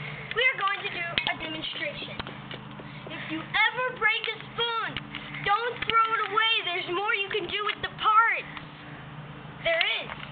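A child's voice talking in short unclear phrases, over a steady low hum.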